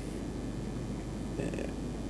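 A pause between words: steady low mains hum of the room and sound system, with a faint short sound about one and a half seconds in.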